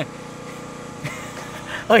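An engine idling with a steady low hum. A man's voice cuts in at the very end.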